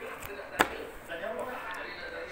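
Pages of a hardback picture book being turned by hand, with one sharp tap about a third of the way in as a page comes down flat.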